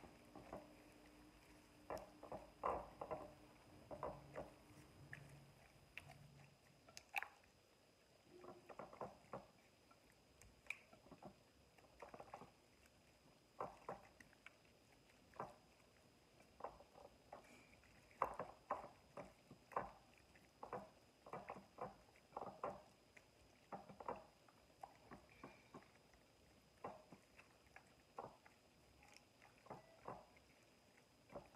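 Faint wet squishing of hands rubbing seasoning and herbs into raw flounder fillets in a glass bowl, in short, irregular squelches with the odd soft tap.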